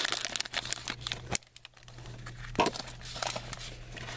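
A trading card pack wrapper being torn open and crinkled in the hands. Dense crackling for about the first second and a half, then quieter rustling with a few sharp clicks as the cards come out.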